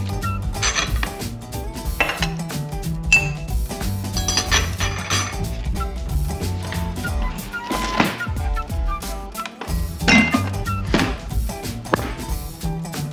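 A spoon clinking several times against a ceramic coffee mug as milk or cream is stirred into the coffee, over background music.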